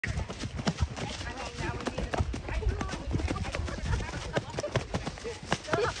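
Horses' hooves on a leaf-covered dirt trail, with irregular thuds and crunches as an excited bay horse jigs along behind.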